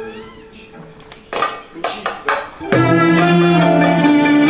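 A Turkish classical music ensemble of violin, kanun and other instruments plays the instrumental opening of a song in makam Kürdi. It starts with soft held notes, a few sharp struck notes come about a second and a half in, and then the full ensemble enters loudly with held notes near the end.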